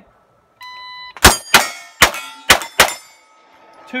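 Shot timer beeps once for about half a second, then a Sig MPX pistol-caliber carbine fires five fast shots at steel plates within about a second and a half, starting a little over a second in.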